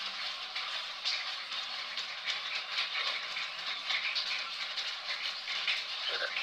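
Steady hissing background noise with a faint crackle and no clear pitch or rhythm.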